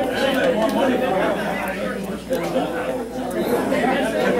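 Several people talking at once: indistinct chatter in a large room.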